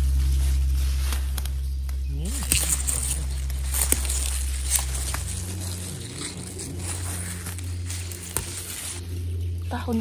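Close-up rustling of wild garlic (ramsons) leaves, with several sharp snaps as stems are picked by hand, over a low steady hum that shifts in pitch about halfway through.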